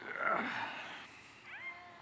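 Audience murmuring and reacting as they try a hand trick, fading after the first half-second, with a short high gliding vocal sound near the end.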